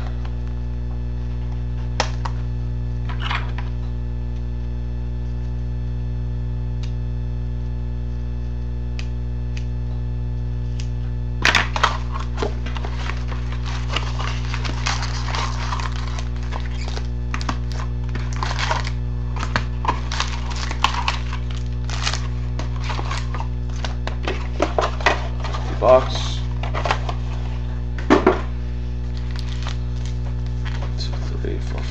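Sealed hockey card packs crinkling and clicking as they are lifted out of their cardboard box and stacked on a wooden table, over a steady electrical hum. A couple of single clicks come first, and from about a third of the way in the handling goes on in irregular bursts.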